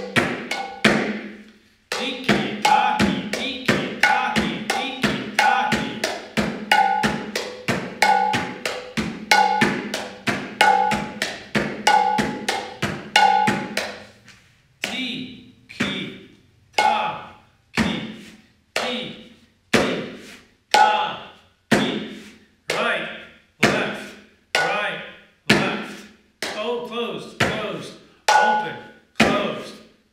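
Bengali mridanga, a two-headed hand drum, played with both hands: a fast continuous run of strokes on the small and big heads, with a ringing high note about once a second. From about halfway it changes to a slower, even pulse of about one stroke a second, the back-and-forth tiki-taki and te-re-ke-ta stroke patterns being practised.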